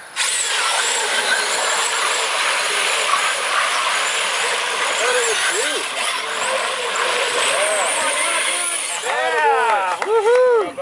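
Radio-controlled scale crawler truck driven at full throttle through the mud pit: its electric drivetrain gives a loud, steady hiss with a wavering high whine. Voices whoop near the end.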